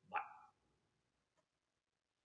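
A single short dog bark, a pitched call of about half a second just after the start.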